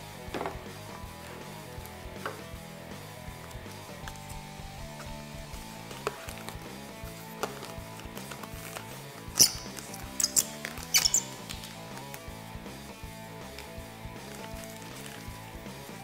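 Background guitar music, with scattered crackles of protective plastic film being peeled off a polycarbonate windshield. The crackles come in a brief cluster of sharp bursts about nine to eleven seconds in.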